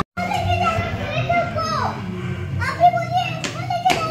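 Children playing and calling out in high voices, with a few sharp clicks in the second half.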